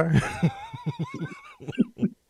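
A man laughing: a run of short, high-pitched wavering pulses that grows fainter and trails off near the end.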